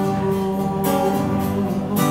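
Live solo country-rock song: a steel-string acoustic guitar strummed through a PA, with a sung note held over the first second or so before the next strums.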